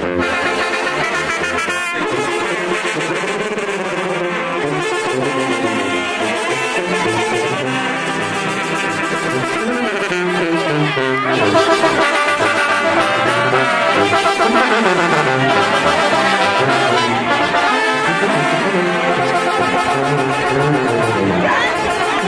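Brass band music, with trumpets and trombones playing a melody together.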